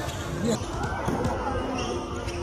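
Crowd of spectators talking and shouting in a large covered gym during a basketball game, with a single sharp thud of the basketball about half a second in.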